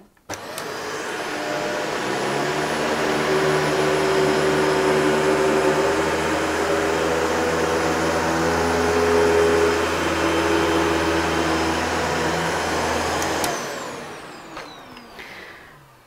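Shark DuoClean upright vacuum cleaner on full suction in its carpet setting, its brush roll running over carpet matted with dog hair. The motor is switched on just after the start and rises in pitch for a couple of seconds. It runs steadily, then winds down and fades near the end.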